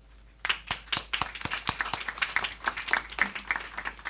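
A small group of people applauding, with separate claps heard, starting about half a second in.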